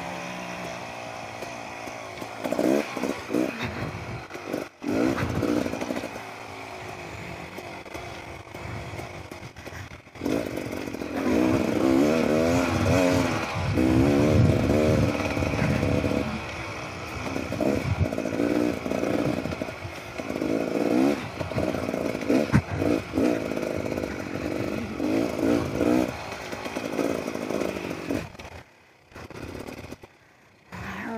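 Beta Xtrainer 300 two-stroke single-cylinder dirt bike engine being ridden, revs rising and falling constantly with the throttle. It runs lower and quieter for the first several seconds, then louder with quick rev changes, and drops away briefly near the end.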